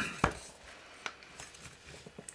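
A sharp knock about a quarter second in, then a few faint taps: hands handling and turning the metal housing of an aircraft angle-of-attack sensor.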